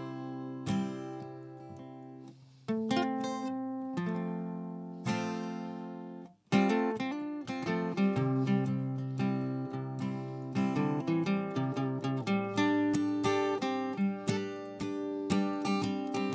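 Acoustic guitar alone, no singing: a few chords strummed and left to ring with short gaps between them, then from about six and a half seconds in a steadier picked and strummed chord pattern, the instrumental lead-in to the next song.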